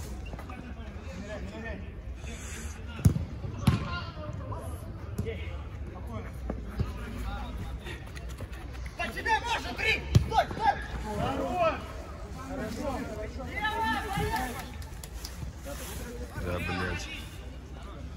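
A football being kicked on an artificial-turf pitch: sharp thuds, two about three seconds in and one about ten seconds in, amid players' distant shouts and calls.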